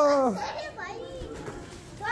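A young child's drawn-out shout that falls away about half a second in, followed by fainter short vocal sounds.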